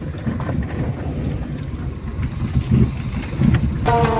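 Rumble inside the cab of an old vehicle driving over a rough dirt track: engine and tyre noise with scattered knocks and rattles. Music comes in just before the end.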